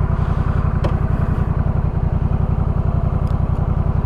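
Honda Rebel 1100's parallel-twin engine idling steadily through a short aftermarket Coffman's Shorty exhaust, a low, even pulse heard from the rider's seat.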